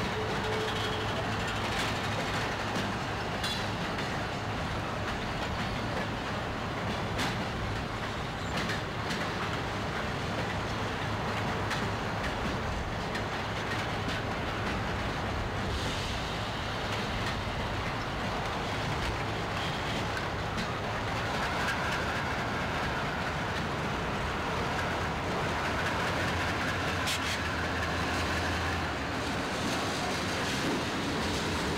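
Diesel locomotive engine running with a low steady hum as the locomotive rolls slowly past, over the rolling clatter of a freight train's cars going by on the next track. Now and then a wheel clicks sharply over a rail joint.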